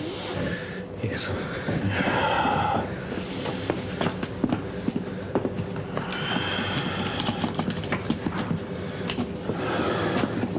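A man's laboured, gasping breathing and low vocal sounds as he struggles for air during a bout of paroxysmal tachycardia. Scattered small clicks and knocks of movement and handling run through it.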